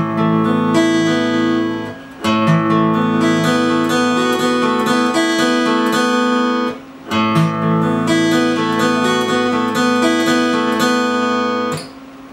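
Steel-string acoustic guitar picking an arpeggio pattern over an open A chord, going up the chord and back down. The pattern is played twice through, with a brief gap about two seconds in and again about seven seconds in.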